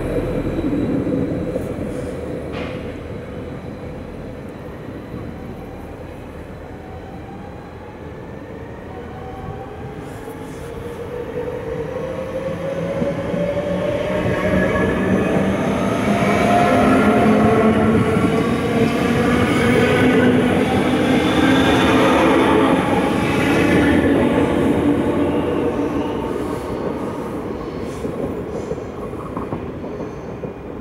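NS VIRMm double-deck electric multiple unit accelerating out of the station and passing close by. Its traction motors whine in a pitch that rises as it speeds up, over a rumble of wheels on rail. The sound is loudest as the train goes past, about halfway through, then fades.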